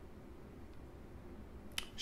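Quiet room tone, with one short sharp click near the end.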